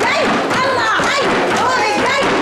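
A group of women's voices chanting and shouting over hand-beaten frame drums, a continuous loud din with no pause.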